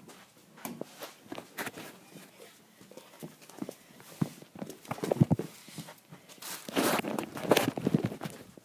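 Irregular footsteps and small knocks on a hard floor, mixed with camera-handling noise. There are heavier thuds about five seconds in and a loud stretch of rustling near the end.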